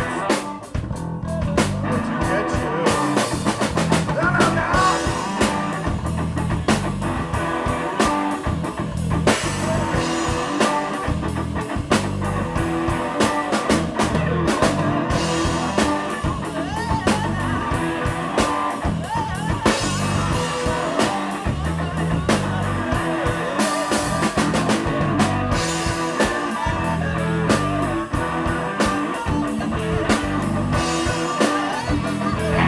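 Live rock trio playing a jam: keyboard, drum kit and bass guitar, with a steady beat of drum hits.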